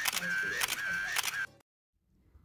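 A run of sharp, irregular clicks with a high wavering tone between them, cutting off suddenly about one and a half seconds in.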